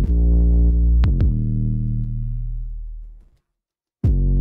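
An 808 bass line isolated from a full mix by Logic Pro's Stem Splitter plays alone: deep sustained bass notes, each opening with a sharp click. The last note fades out a little past three seconds in.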